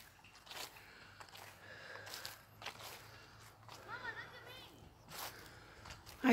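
Faint outdoor ambience: distant children's voices calling, with a few soft footsteps.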